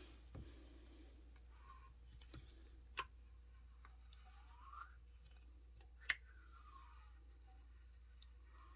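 Faint, sparse clicks from the breaker points of a Homelite XL-76 chainsaw's ignition opening and closing as the engine is turned over, four clicks with the loudest about six seconds in. Two faint squeaks glide between them, one rising and one falling.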